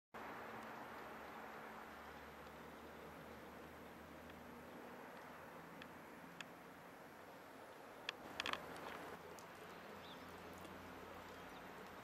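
Faint outdoor ambience: a low, steady hiss and hum, broken by a few brief sharp sounds about eight seconds in.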